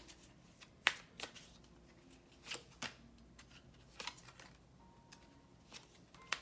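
A tarot deck shuffled by hand: an uneven scatter of short, soft card snaps and slides, the sharpest about a second in.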